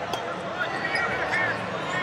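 Sports hall background: a low murmur of a crowd with faint distant voices calling out, and no loud sound.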